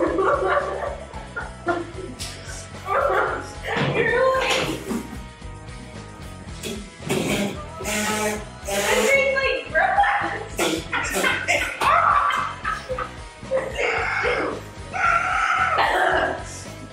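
Two people yelping, gasping and whimpering in short repeated outbursts from the burning heat of raw jalapeños they have just eaten.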